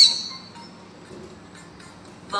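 A high warbling electronic tone from a smartphone's children's app fades out within about half a second. Then there is only a faint background hiss with a few soft clicks.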